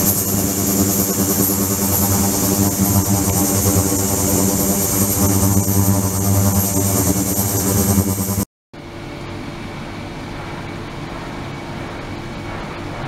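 Ultrasonic cleaning tank running: a steady buzzing hum of many even tones with a hiss above it. About eight and a half seconds in the sound cuts out for a moment and comes back as a quieter, plainer steady noise.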